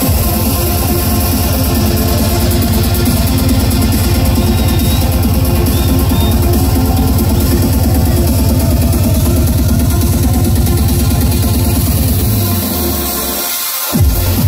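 Trance music played loud through a nightclub sound system, with a heavy, steady bass line and beat. Near the end the bass drops out for about a second before the beat comes back in.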